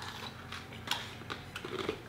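A few light clicks and taps from plastic cups and food containers being handled on a table, the sharpest about a second in and several smaller ones near the end, over a faint low room hum.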